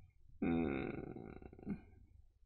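A man's low, drawn-out vocal sound, starting about half a second in and trailing off after about a second and a half, its pitch sinking toward the end.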